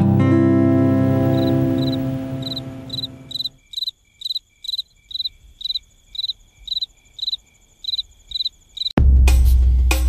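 Crickets chirping steadily in short, evenly spaced high chirps, about two and a half a second. At first a strummed acoustic guitar chord rings out and fades under them, and loud music cuts in suddenly near the end.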